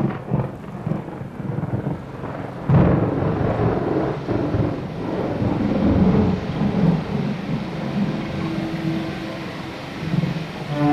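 Thunderstorm sound: rolling thunder over a steady wash of rain, with a sudden loud crack of thunder about three seconds in.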